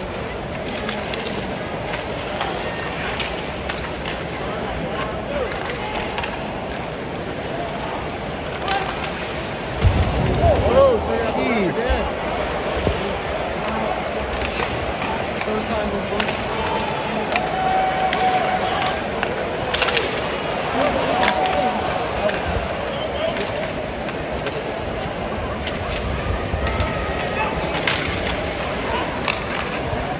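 Live ice hockey game heard from the stands: the steady murmur of an arena crowd, with skates scraping and sharp clacks of sticks and puck on the ice. The crowd noise swells briefly about ten seconds in.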